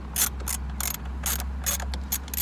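Ratchet socket wrench clicking in short irregular runs, a few clicks a second, as it turns a 10 mm bolt holding the grab handle on a Jeep JL A-pillar.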